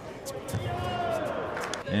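A few sharp slaps and thuds of a judoka's body landing on the tatami mat, with a drawn-out voice in the hall behind them.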